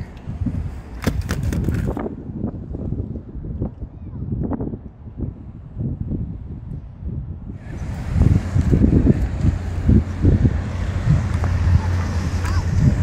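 Wind buffeting the microphone, with rustling and knocks of gear being handled. The wind rumble grows stronger in the last few seconds.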